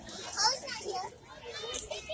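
Children's voices calling and chattering, loudest about half a second in.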